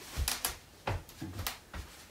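A few short sharp clicks and soft low knocks with faint cloth rustling, from a person shuffling about with a fleece blanket over his head.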